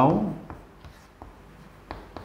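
Chalk writing on a blackboard: a few short, sharp taps and scrapes of the chalk as letters are written.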